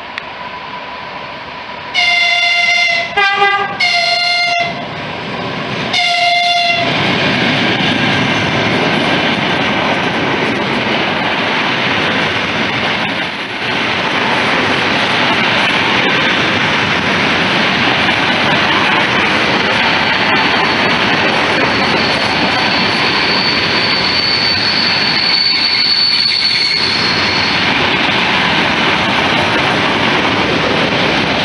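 Suburban electric multiple-unit train sounding its horn in a string of short blasts about two to four seconds in and once more about six seconds in, then passing close by at speed with a loud, steady rush of wheels on rail. A thin high squeal rises for a few seconds past the middle.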